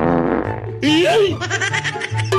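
Background music with a steady bass line, overlaid with edited comic sound effects: a buzzy fart-like effect in the first half second, then a short sliding voice-like effect about a second in.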